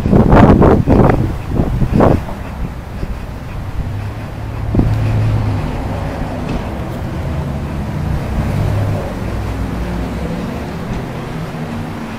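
Wind buffeting a body-worn camera's microphone, in heavy gusts for the first two seconds, then settling into a steady low rumble.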